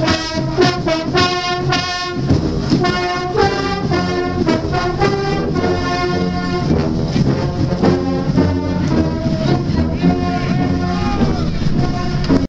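Marching band brass playing a march: baritone horns and sousaphones with trumpets, in short accented notes on a steady beat.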